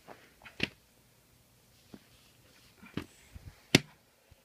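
Handling noise: a few scattered taps and knocks as plush toys and paper sheets are moved about on a wooden surface, the sharpest one near the end.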